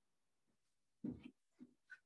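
A few soft thuds of footsteps on a floor, the first and loudest about a second in, followed by a brief faint squeak near the end.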